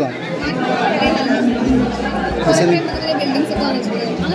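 Chatter of several people talking at once, with no single clear voice.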